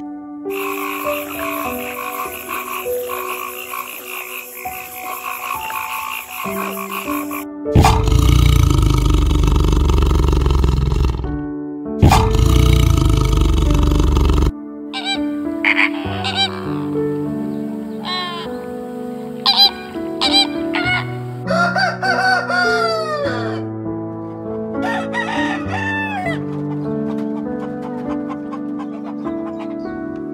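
Background music with animal calls laid over it: a frog calling for the first several seconds, then two long, loud tiger growls, the loudest sounds here, and then several rooster crows in the second half.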